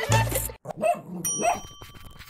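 Background music that cuts off about half a second in, followed by an outro sound effect: a small dog yapping twice and a bell-like ding that starts a little past a second in and rings on.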